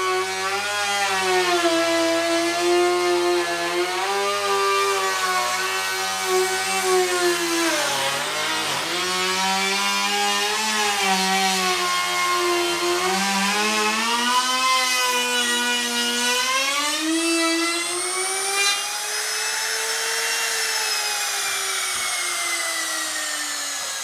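Electric edge (trim) router running at high speed while cutting a shallow 6 mm rebate around the edge of a hatch hole in plywood. Its whine wavers and sags as the bit is fed into the wood and then recovers. Near the end the pitch rises and then falls away as the router comes off the cut and winds down.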